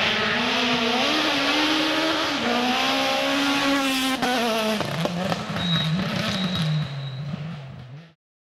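Kit-Car/S1600 rally car engine at high revs on a gravel stage, its pitch climbing and stepping with gear changes. About five seconds in it drops to a lower, wavering note as the car passes close, and the sound cuts off just before the end.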